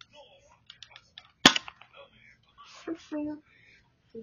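Plastic spring-powered BB pistol, its spring stretched for more power, giving one sharp loud snap of the spring action about a second and a half in, with lighter plastic clicks of handling around it.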